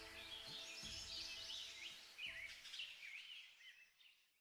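Faint forest birds calling: a string of short chirps that swoop down and up in pitch, clearest in the second half and fading out just before the end. A faint steady low hum lies underneath.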